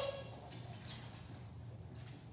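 Quiet room tone: a steady low hum with a few faint, soft brief sounds.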